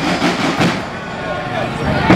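A few strikes on hand-carried bass drums in the first second, then a lull in the drumming filled with crowd voices and street noise. The drums start again right at the end.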